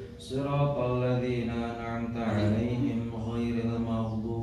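A man reciting the Quran aloud in a long melodic chant during congregational prayer, with held notes in phrases that break briefly just after the start and again about halfway.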